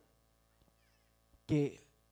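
A man's voice through a microphone: near silence with a couple of faint ticks, then one drawn-out spoken word with falling pitch about one and a half seconds in.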